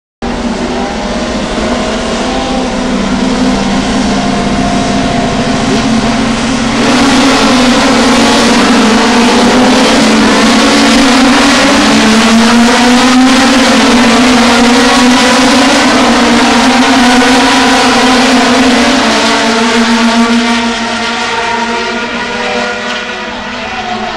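Field of touring race cars accelerating away at a race start, many engines running together. The sound swells sharply about seven seconds in, stays loud, then fades after about twenty seconds as the pack moves away.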